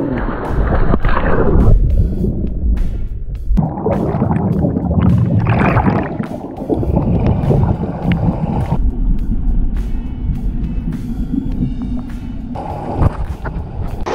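Pool water churning and splashing, then muffled underwater rumbling and bubbling picked up by a GoPro in its waterproof housing beneath the surface. The water noise is heaviest in the first two seconds and again around four to six seconds in.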